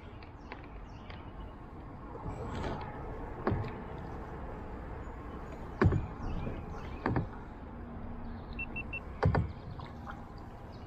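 Handling noise from an action camera and its pole mount on a plastic kayak being gripped and adjusted: rubbing and scraping, then several sharp knocks, the loudest about six seconds in.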